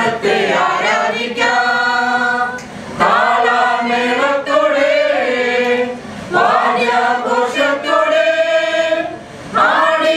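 A mixed group of women and men singing a Malayalam Christian song together in sustained phrases, with short breaks between lines about every three seconds.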